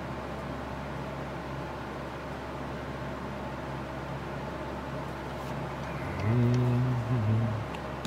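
Steady low background hum and hiss, with a man's short, voiced 'hmm' about six seconds in.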